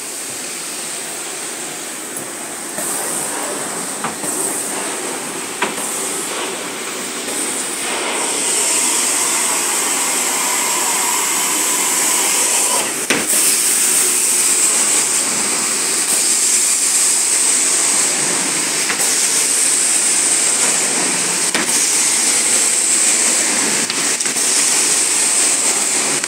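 Carpet-cleaning extraction wand running over carpet: a steady rush of suction and spray. It grows louder about eight seconds in, with a sharp click near the middle.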